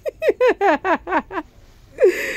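A woman laughing: a quick run of about seven short "ha" syllables, each dropping in pitch, lasting about a second and a half.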